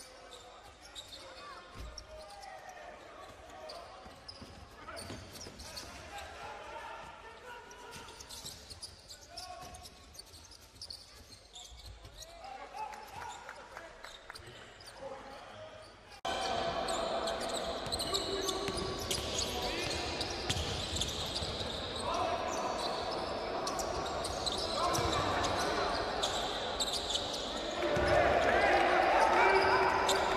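Basketball game sound on a hardwood court: a ball being dribbled, with players' voices calling on the court. It steps up sharply in loudness about halfway through and again near the end.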